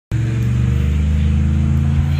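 A motor vehicle engine idling nearby: a steady low hum.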